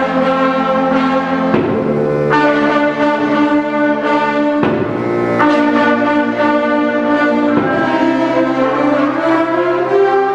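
Woodwind band of clarinets, saxophones and flutes playing sustained, held chords that shift to new chords every second or two.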